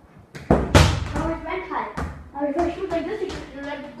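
A football kicked hard by a bare foot, with two loud thuds in quick succession about half a second in as the foot strikes the ball and the ball hits a hard surface; a second sharp knock follows about two seconds in.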